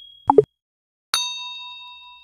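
Animated-outro sound effects: a short two-note pop falling in pitch, then about a second in a bright notification-bell ding that rings on and slowly fades.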